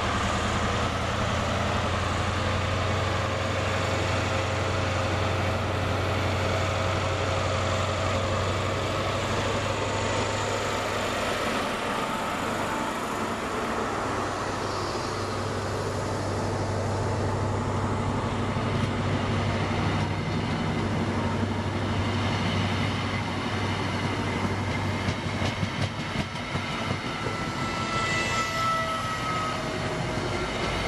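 Class 43 HST diesel power car pulling an InterCity 125 away from the platform: a low, steady engine drone under the rumble of the Mark 3 coaches rolling past. The drone eases off near the end, when thin high wheel squeals come in.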